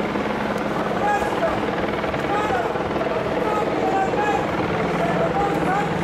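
Many people talking at once in an outdoor crowd, with no single voice standing out, over a steady low mechanical drone.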